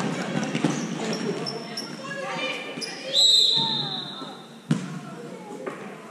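Basketball dribbling and knocks on a sports-hall floor with short sneaker squeaks and shouting, then a referee's whistle blast of about a second, halfway through, the loudest sound; one sharp bang of the ball follows shortly after.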